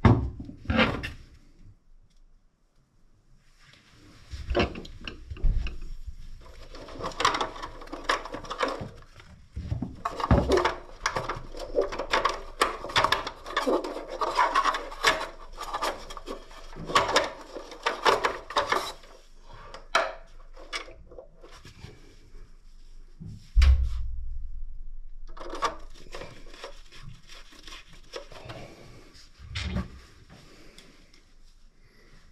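Gloved hands working on the wiring inside an electric water heater's open terminal compartment: irregular clicks, rubbing and light knocks of plastic and wire. One heavier thump comes a little past two-thirds of the way through and dies away slowly.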